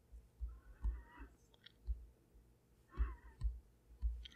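Quiet, scattered taps and clicks of an Apple Pencil on an iPad's glass screen during sculpting strokes, about half a dozen soft knocks in all. Two faint, brief wavering sounds come about a second in and again near the end.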